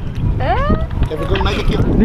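Wind rumbling on the microphone, with a person's voice rising in pitch in a short cry about half a second in, and brief speech-like voice sounds later.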